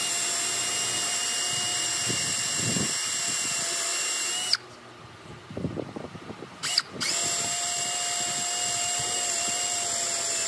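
Cordless drill with a spade bit boring into a wooden beam: a steady motor whine runs for about four and a half seconds and stops, a few knocks follow as the drill is moved, and the drill starts again about seven seconds in on the next hole.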